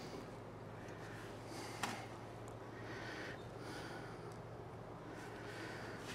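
Quiet background with a steady faint low hum and soft breathing close to the microphone, with one light click about two seconds in.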